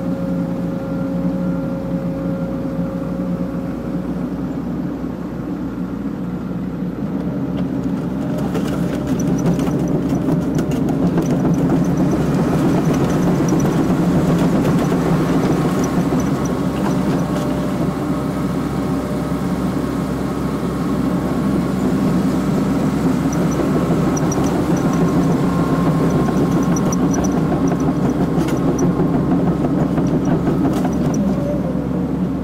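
Excavator's diesel engine running, heard from inside the cab, working harder and louder from about eight seconds in as the machine lifts a load on its hydraulics.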